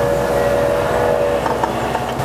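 A horn sounding two steady tones together, cutting off about a second and a half in, over a loud rushing rumble.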